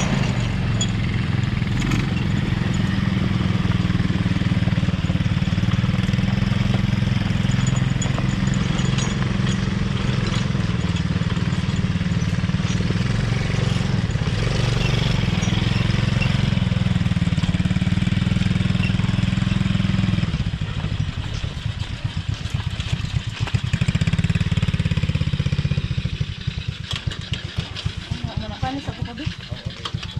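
Small quad-bike (ATV) engine running steadily and low-pitched, then slowing to an uneven, pulsing chug about twenty seconds in.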